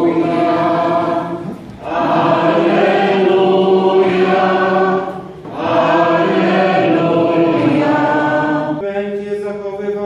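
Voices singing a slow liturgical chant in long held phrases, with short breaks about two and five seconds in. This is the sung Gospel acclamation that follows the reading. Near the end the sound thins to fewer, clearer voices.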